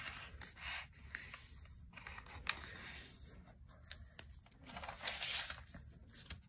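A square sheet of origami paper rustling and scraping on a tabletop as it is folded in half into a triangle, creased with the fingers, and opened out flat again. There is one sharp tick about two and a half seconds in.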